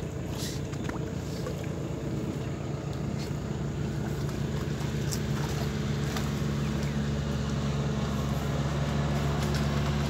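An engine running steadily at a distance: a low drone that grows slightly louder through the second half.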